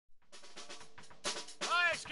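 Drum kit played in the background: a steady cymbal wash with a few sharp drum hits. A man's voice starts speaking near the end.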